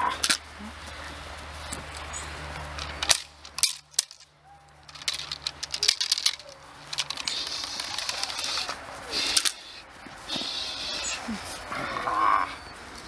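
Tug-of-war with a Dobermann puppy on a rag tug toy: scuffling and rustling of the rag, with several sharp clacks, the loudest about three seconds and about nine seconds in.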